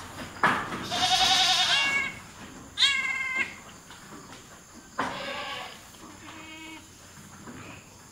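Goat bleating: three loud, quavering bleats, the first and longest lasting over a second, then a fainter bleat near the end.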